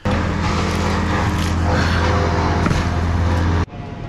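A chainsaw running at high revs, loud and steady, cutting off suddenly about three and a half seconds in.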